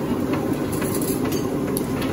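Steady low rumble of street background noise, with a few brief, light clinks of steel spoons and bowls.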